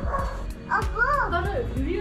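A dog giving about four quick barks in a row, starting under a second in, each rising and falling in pitch.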